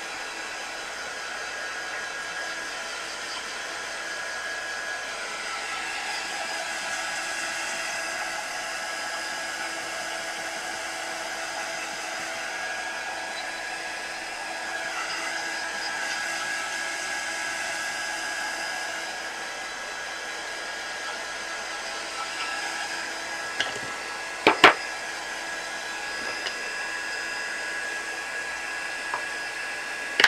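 Craft heat gun blowing steadily, its fan running with a faint whine, drying wet paint. A few sharp knocks sound near the end.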